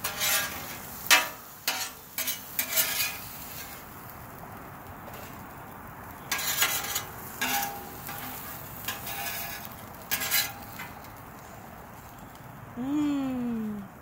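Metal griddle spatula scraping and clattering on the steel top of a Blackstone griddle in short, irregular strokes, over a faint steady sizzle from the still-hot griddle.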